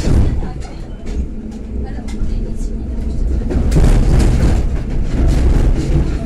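EN57 electric multiple unit running, heard from inside the carriage: a steady low rumble of wheels on rails, broken by short clicks over rail joints and points. It grows louder about two-thirds of the way in.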